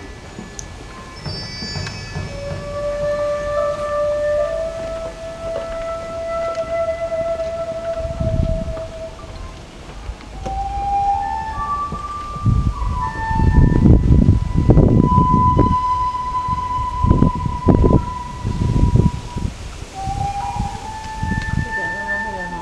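Japanese bamboo flute playing a slow melody of long, pure-toned held notes that slide into pitch. From about a third of the way in, bursts of low rumbling noise come and go beneath it, loudest in the second half.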